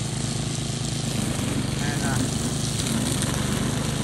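Small engine running steadily at a constant speed, as from a walk-behind lawn mower cutting down a garden row.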